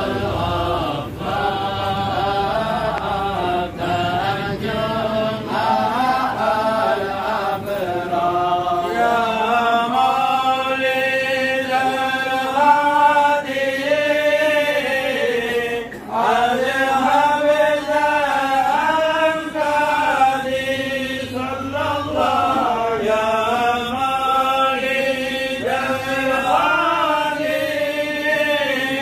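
Men's voices chanting mawlid verses in Arabic together, unaccompanied and melodic, with a brief pause about halfway through.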